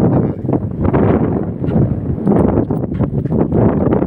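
Wind buffeting the phone's microphone: a loud, irregular low rumble.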